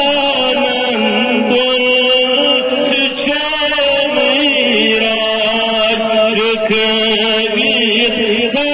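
A man chanting a Kashmiri naat solo, a devotional poem sung in long held notes that bend and waver from one pitch to the next.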